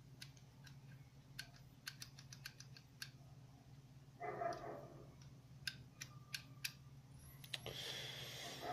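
Irregular small clicks and taps of a small metal-and-plastic handheld device being turned and fiddled with in the fingers, with a brief rustle about four seconds in and more handling noise near the end, over a faint steady low hum.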